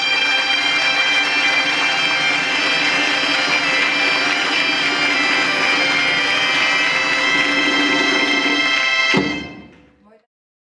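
A group of Galician bagpipes (gaitas) playing a tune over their steady drones. About nine seconds in the music stops with a thump and dies away.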